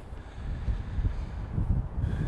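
Wind buffeting the microphone outdoors: an uneven low rumble that rises and falls.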